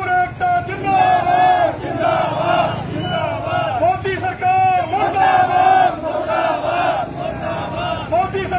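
A large crowd of protesting farmers shouting slogans together, loud and continuous, phrase after phrase.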